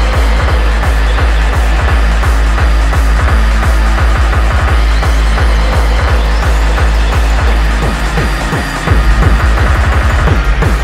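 Hardtek (free tekno) DJ mix: a fast, steady kick drum over heavy bass, with synth layers above. The kick drops out briefly a little past eight seconds in, then comes back in at full level.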